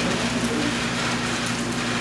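Steady hiss-like background noise with a low, steady hum under it.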